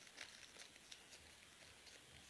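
Near silence, with a few faint crinkles of aluminium foil being twisted around a pen, one shortly after the start and another near the middle.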